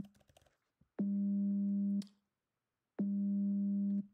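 Computer-synthesized 200 Hz sine tone pulsing on and off, a dull hum that almost sounds like a phone vibrating. It comes in two one-second pulses a second apart, each starting and stopping abruptly.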